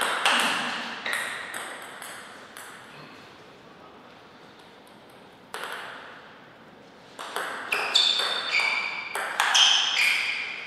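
Table tennis ball clicking off paddles and the table in quick succession, each hit ringing briefly. The run of hits stops about two seconds in, a single knock comes near the middle, and another quick run of ball hits starts a few seconds before the end.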